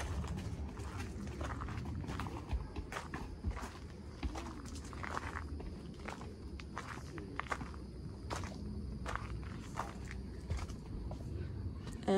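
Footsteps of a few people walking on a gravel trail, then onto a wooden footbridge near the end: an irregular run of crunches and knocks.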